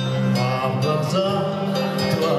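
Live wedding-band music: a Russian song played on keyboard with a steady bass line, and a man singing into a handheld microphone.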